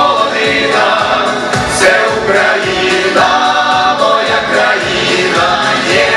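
Ukrainian folk vocal ensemble of men and women singing a song in harmony through stage microphones, over a steady beat of about two strokes a second.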